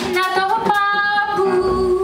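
A woman's voice singing one long held note in a live jazz quintet, rising a little in pitch early on, over a sustained low note, with the drums dropping out.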